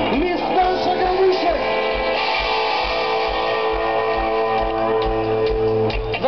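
Live pop-rock band playing through an open-air PA: held instrumental notes with guitar over a steady beat, as heard from the crowd.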